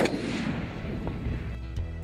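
A rifle shot from the bench: the sharp crack falls right at the start, then the report rolls away and fades over about a second and a half. Steady background music runs underneath.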